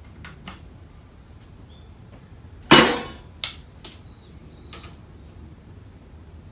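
A sharp metallic clack with a brief ring, a little under halfway through, then a few lighter clicks: a golf club being handled and clamped in a metal club-measuring machine.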